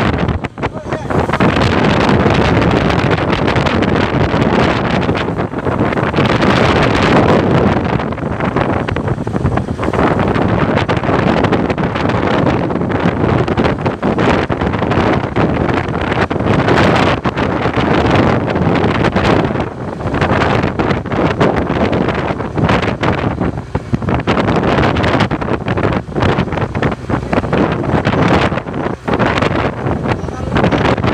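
Strong wind buffeting the microphone on a boat at sea, over the running boat engine and waves, loud and uneven with brief dips.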